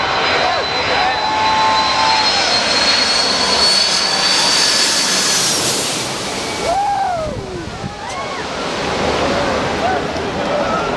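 A Boeing 747's four jet engines passing low overhead on final approach. A high whine rising slightly in pitch and jet noise build to a peak about five to six seconds in, then drop off sharply as the jet passes. People's voices shout over it.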